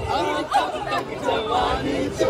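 A crowd chattering: many voices talking and calling out over one another at once.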